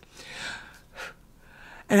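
A woman's breaths close to a headset microphone: one longer drawn breath, then a short puff of breath about a second in and a fainter one near the end.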